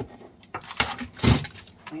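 Small dehydrator trays being handled and set down on a countertop: a few light clicks, then a louder rattling clatter about a second and a quarter in.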